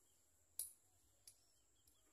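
Near-silent field ambience: faint bird chirps over a steady, faint high tone, with one sharp click about half a second in and a softer one about a second later.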